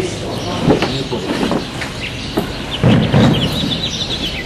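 Outdoor ambience of indistinct background voices and scattered knocks from the statue being handled and secured in the pickup bed, with a louder thump about three seconds in and birds chirping near the end.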